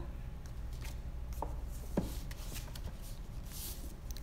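Hardcover books being slid out of and back into a row on a bookshelf: dust jackets and covers rubbing and rustling, with a couple of light knocks about a second and a half and two seconds in.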